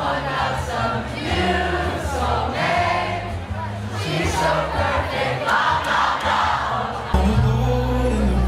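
Live band music with a singer on a microphone, the crowd singing along, heard from within the audience. About seven seconds in there is a sudden jump to a louder, bass-heavy passage.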